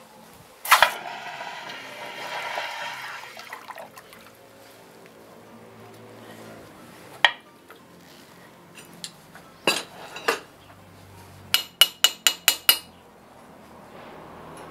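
A sharp metal clank, then a hiss fading over about three seconds as the hot iron piece is dipped in water. Later come a few separate metal clanks, then near the end a quick run of about six ringing metal-on-metal taps, roughly five a second.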